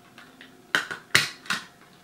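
Hard plastic clicks and snaps as the engine and interior of a 1:18 Bburago diecast model are pried loose from their pins: three sharp clicks in the second half.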